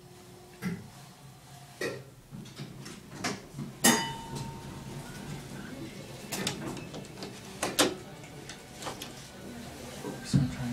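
Elevator car running with a low steady hum, broken by irregular metallic clunks and rattles, the loudest a sharp bang about four seconds in with a brief ring after it.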